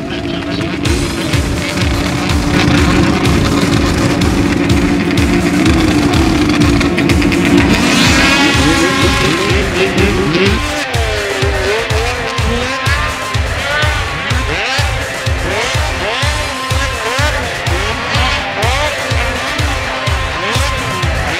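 Music with a steady, even beat. About halfway through, racing snowmobile engines come in over it, revving up and down repeatedly as the sleds accelerate.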